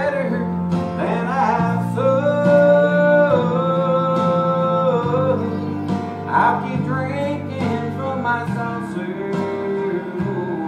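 Man singing a country gospel song into a handheld microphone over acoustic guitar accompaniment, holding long notes through the middle.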